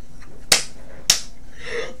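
Two sharp hand slaps about half a second apart during a fit of laughter, followed by a short breathy laugh near the end.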